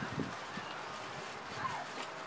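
Outdoor background with a bird calling: a short call that falls in pitch about one and a half seconds in, over a faint steady haze of ambient noise.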